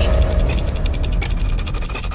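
Dramatic sound-effect sting from a TV serial soundtrack: a rapid, even ticking, about ten ticks a second, over a deep rumble that eases slightly toward the end.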